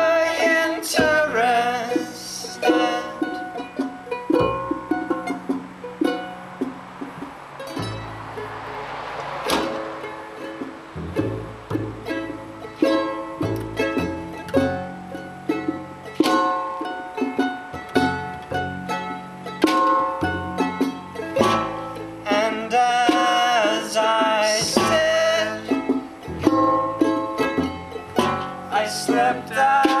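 Acoustic instrumental passage: a charango plucked and strummed in quick high notes over a plucked double bass line, with sharp hits from junk percussion.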